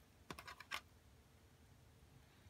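A quick cluster of small, sharp clicks and taps about half a second in, from handling a watch and its leather strap while fitting the strap end and spring bar into the lugs; otherwise near silence.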